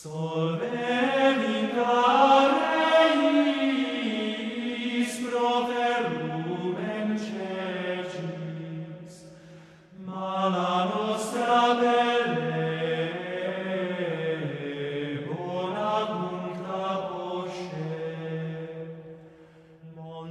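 Male vocal ensemble singing Gregorian chant a cappella in a reverberant church: two long phrases with a short break for breath about halfway, a low note held steady beneath the moving melody.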